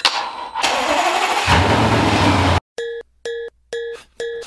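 Car engine being started: the starter cranks and the engine catches about a second and a half in, then runs steadily until the sound cuts off abruptly. Short, evenly spaced chime-like musical notes follow.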